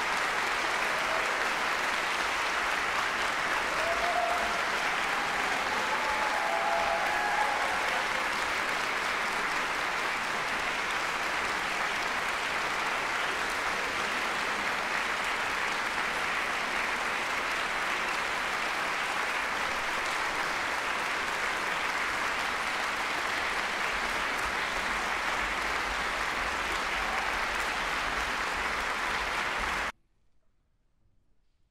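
Concert-hall audience applauding steadily, a dense, even clapping that cuts off abruptly at the very end.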